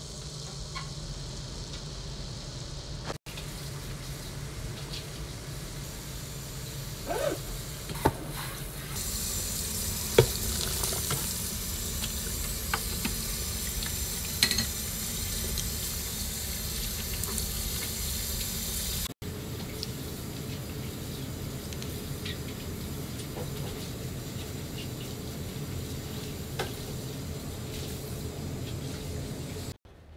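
Instant noodles boiling in a steel pot of water, then water running through a metal strainer in a sink with a steady hiss and a few sharp clinks of metal.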